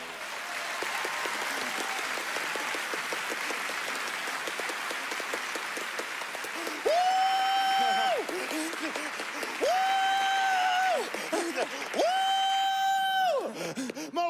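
Theatre audience applauding after a song. Over the clapping, about halfway in, a performer's voice holds three long high calls at the same pitch, each about a second long.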